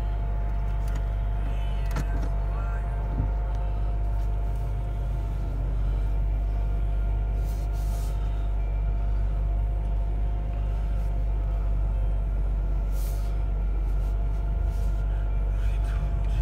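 Chevrolet Monte Carlo's 3.1-litre V6 and its tyres heard from inside the cabin while driving slowly: a steady low rumble with a faint steady whine above it and a couple of small clicks.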